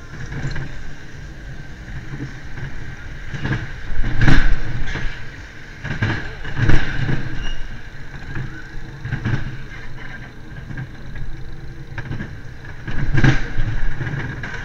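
Wild mouse roller coaster car running along its steel track, with wheels rumbling and clattering and wind buffeting the microphone. There are loud jolts about four, seven and thirteen seconds in.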